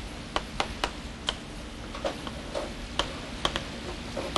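Chalk tapping and clicking against a blackboard while writing: a dozen or so sharp, irregularly spaced clicks, a few a second.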